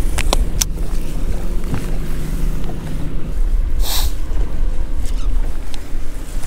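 Boat motor humming steadily under low wind rumble on the microphone, with the hum stopping about three seconds in. A few sharp clicks sound in the first second, and a short hiss comes about four seconds in.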